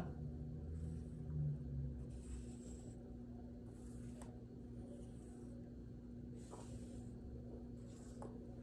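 Faint scrapes of round magnetic markers being slid across a whiteboard, several short strokes, over a steady low hum.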